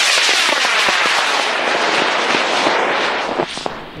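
A high-power rocket's J275 solid motor burning at liftoff: a loud, continuous rushing hiss whose tone sweeps downward as the rocket climbs away, fading and cutting out about three and a half seconds in.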